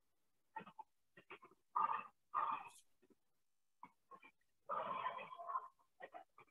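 Animal calls in short separate bursts, the loudest pair about two seconds in and a longer run about five seconds in.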